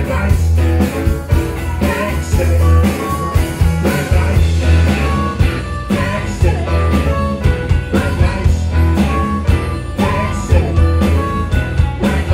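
Live blues-rock band playing a song: electric guitars, bass, drums and keyboard, with a steady drum beat under a continuous bass line.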